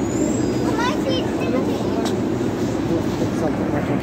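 Steady rumble of a Delhi Metro train, with a brief high squeal near the start and voices of other passengers.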